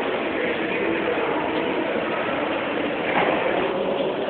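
Align T-REX 700 electric radio-controlled helicopter running, its motor and rotor giving a steady, even sound.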